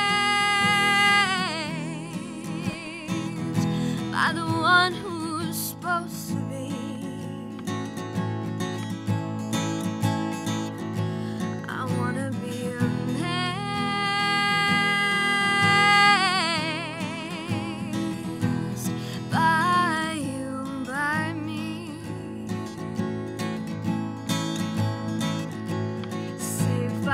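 A woman singing her own song over a strummed acoustic guitar, holding long notes with vibrato near the start and again about halfway through.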